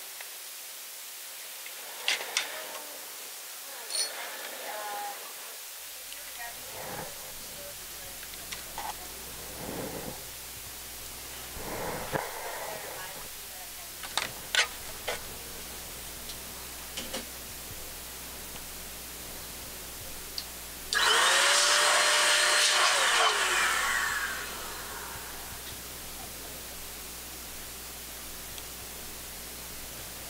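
Scattered light clicks of tweezers handling fine copper coil wire. Then a small electric blower motor runs loudly for about three seconds and winds down, its pitch falling as it stops.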